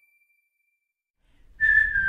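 Silence for over a second, then near the end a whistled note comes in, held and sliding slightly down, as a light music track starts.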